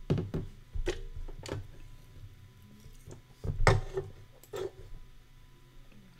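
A few scattered soft knocks and clicks from handling at a computer desk, the loudest coming a little after three and a half seconds in.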